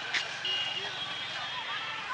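Outdoor background noise with faint distant voices, and a thin, steady high-pitched tone that comes in about a quarter of the way through and holds.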